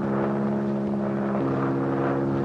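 Open-cockpit biplane's propeller engine running steadily in flight, with its pitch stepping slightly higher about one and a half seconds in.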